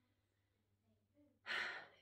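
A pause with a low room hum, then about one and a half seconds in a woman draws a short, audible breath, like a sigh, just before she speaks again.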